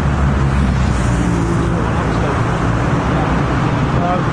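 Steady motorway traffic noise from cars and vans passing at speed on the carriageway alongside. It is a continuous low rumble of tyres and engines, with no single vehicle standing out.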